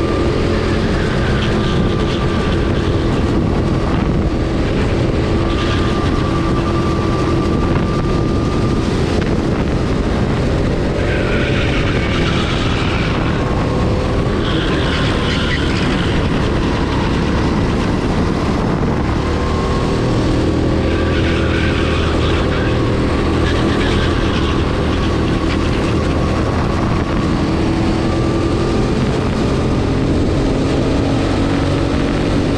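Go-kart engine running hard, heard from onboard the kart, its note rising and falling as it accelerates along the straights and slows for the corners.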